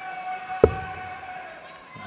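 A steel-tipped dart landing in a bristle dartboard with a single sharp thud about half a second in, the first dart of a player's three-dart visit.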